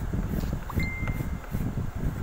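Pencil sketching on paper: irregular scratchy strokes over a low rumbling noise, with one short steady high tone about a second in.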